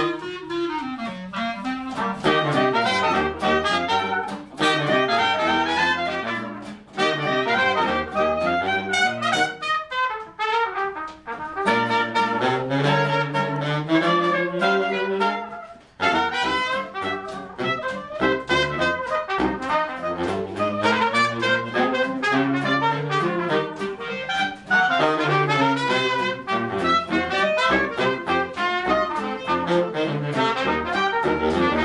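A small jazz band playing live: trumpet, clarinet, bass saxophone and guitar together, with brief dips between phrases.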